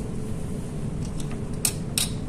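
Steady room hum with a faint low tone, over a few small clicks and taps of plastic labware being handled on the bench. The two sharpest clicks come near the end.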